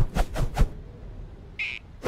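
Cartoon sound effects for a gliding flying squirrel: about four quick whooshes in rapid succession, then a short high squeak near the end.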